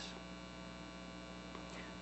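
Low, steady electrical mains hum with its stack of overtones, an even drone with nothing else over it.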